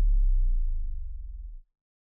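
The last deep electronic bass note of a remix track, a low sustained tone that slowly dies away and ends about one and a half seconds in.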